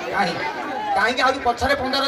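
A man talking into a handheld microphone, amplified through a stage sound system.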